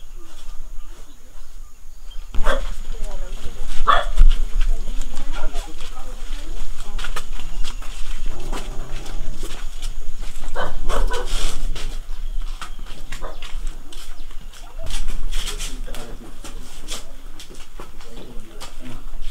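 People's voices talking, with a few short, loud, sharp calls over them, about four times.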